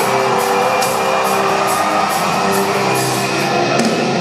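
Rock band playing live and loud through a concert PA: electric guitar and drums, with a steady cymbal beat about three strokes a second.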